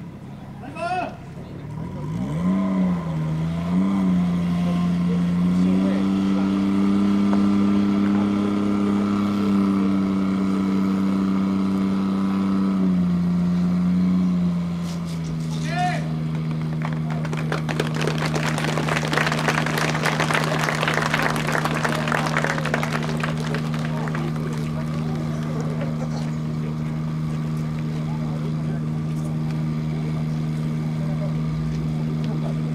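Fire pump engine revving up, holding a steady high speed, then stepping down about halfway through to a steady lower speed while it feeds the hose line. Water rushes loudly from the nozzle for several seconds after that, with short shouted calls from the crew.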